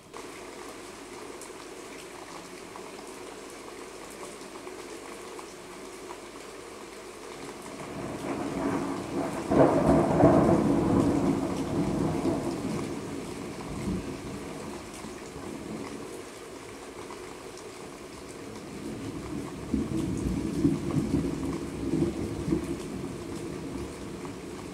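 Steady rain with thunder: a long rumble builds about a third of the way in, peaks and dies away over several seconds, and a second, shorter rumble comes near the end.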